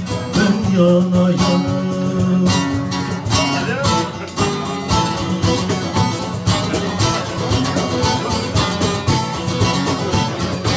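Instrumental passage on a bağlama (Turkish long-necked saz), plucked in a running melody, over darbuka goblet-drum strokes.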